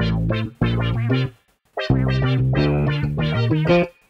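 Slices of a sampled music loop played back in Fruity Slicer 2: three chunks of music that each start and stop abruptly. There is a short break about half a second in and a longer one about a second and a half in, and the last chunk runs about two seconds before cutting off just before the end.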